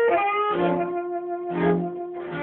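Chamber orchestra playing a blues piece: held notes with two plucked chords, about half a second and a second and a half in.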